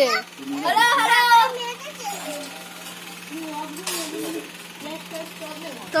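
A child's high voice speaks briefly about a second in, then quieter background voices follow over a steady low hum.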